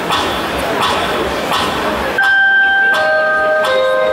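Audience noise until about two seconds in, when it cuts off and a keyboard starts playing sustained single notes, one after another, opening the song.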